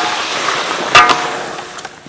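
Metal spatula knocking and scraping against a wok as bananas are stir-fried in a sizzling sauce. Two ringing clangs, one at the start and one about a second in, over a steady sizzle.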